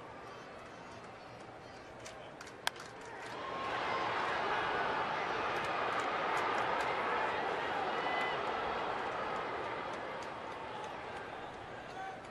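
Crack of a wooden baseball bat hitting a pitch foul, a single sharp crack about two and a half seconds in, followed by a ballpark crowd's cheer that swells, holds for several seconds and fades as the ball goes into the seats.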